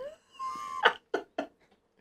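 A man laughing: a short high-pitched squeal, then three quick bursts of laughter.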